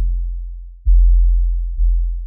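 Deep 808 bass notes of a trap beat's outro, heard alone without drums: one note fading, a fresh note struck a little under a second in and another near the end, each dying away.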